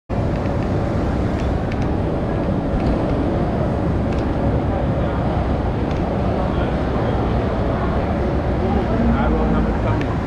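Busy ambient noise of a crowded open-sided store yard: indistinct voices over a steady low traffic or engine hum, with a few faint knocks. It cuts in suddenly at the start.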